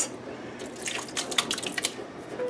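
Canned diced tomatoes sliding out of a tin can into a pot of kidney beans, with a few short wet drips and ticks in the second half.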